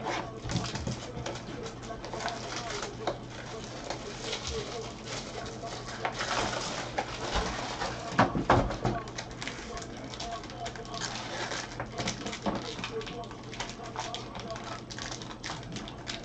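Gloved hands handling trading cards and unwrapping a sealed card box: a run of small clicks, taps and plastic crinkling, over a low steady hum.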